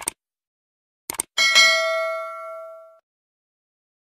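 Subscribe-button animation sound effect: a quick double mouse click at the start and another about a second in, then a bell ding that rings out and fades over about a second and a half.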